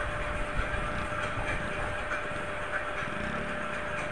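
Steady engine and road noise from the moving vehicle carrying the camera, travelling slowly down a street, with a faint steady whine.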